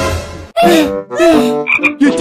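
Cartoon comedy sound effect of croaking: two drawn-out croaks about half a second each, then two short high peeps near the end.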